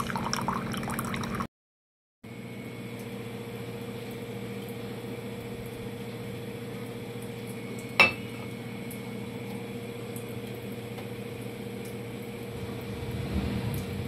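A thin stream of water running into a steel pot from a water purifier's tap, broken off by a short silence. Then a steady low hum runs on, with one sharp glass clink about eight seconds in, the loudest sound.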